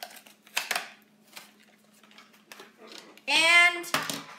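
Toy-car packaging crackling and clicking as a die-cast car is worked out of it, with a sharp crackle about half a second in and fainter crackles after. A short vocal sound near the end is louder than the packaging.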